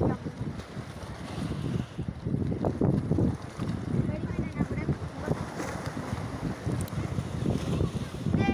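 Gusty wind buffeting the phone's microphone, an irregular low rumble that rises and falls.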